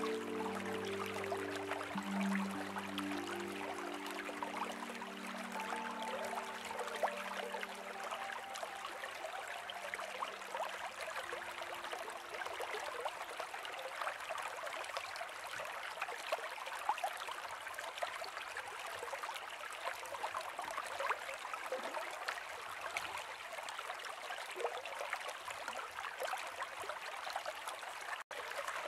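A steady trickling stream, with soft held musical chords that fade out within the first ten seconds or so, leaving the running water on its own.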